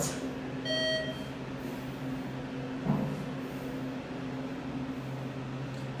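ThyssenKrupp elevator car running down between floors with a steady low hum, a single short electronic beep about a second in and a light knock about three seconds in.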